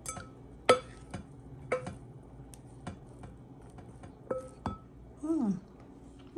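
A utensil clinking against the side of a bowl about six times, each clink ringing briefly, while pasta salad is stirred and the pasta unstuck; the loudest clink comes about a second in. A short falling voice sound near the end.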